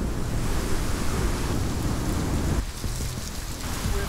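Hurricane wind and heavy rain: a dense, steady rush with a deep rumble of wind buffeting the microphone, easing for about a second after the middle.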